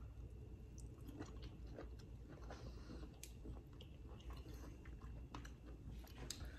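A person chewing a mouthful of stir-fried mushroom: faint, irregular soft clicks and wet mouth sounds.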